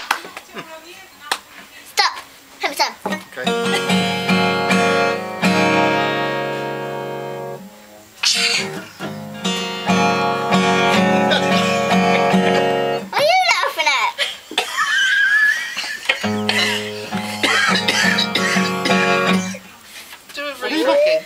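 Acoustic guitar strummed in three passages of ringing chords, each a few seconds long, with short pauses between them.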